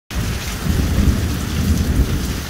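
Heavy rain falling hard, with a low rumble of thunder running underneath.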